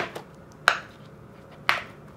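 Three sharp clicks of a hard clear plastic storage box being handled, about two-thirds of a second and then a second apart.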